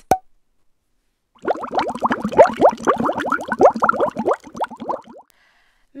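Cartoon bubbling sound effect: a quick, dense run of short rising plops lasting about four seconds, after a single click near the start.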